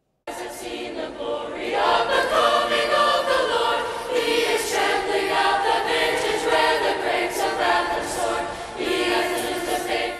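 Mixed choir of women's and men's voices singing, the song cutting in suddenly just after the start and fading out near the end.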